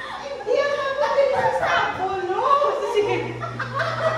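People talking: voices speaking, with no other clear sound.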